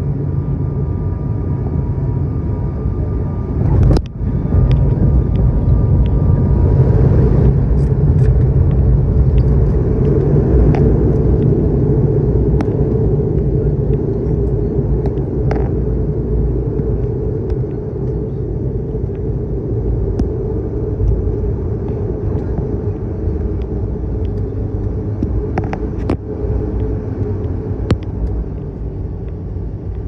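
Cabin noise of an ATR 72 turboprop's engines and propellers during landing: a steady loud rumble, with a sharp knock about four seconds in, after which the rumble grows louder, then slowly eases as the aircraft slows on the runway.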